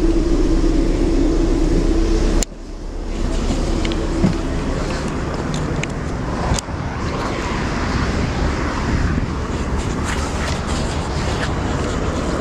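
Road noise inside a long-distance coach on the highway: a steady engine hum and rumble with small rattles. The hum breaks off suddenly about two seconds in, and the sound changes abruptly again about halfway through.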